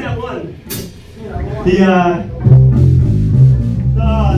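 Amplified electric bass and guitar ringing out a few low held notes between songs, over voices in the room. The notes come in about two and a half seconds in and are the loudest sound.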